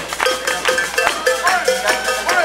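Metallic percussion struck in a steady rhythm, about four ringing strikes a second.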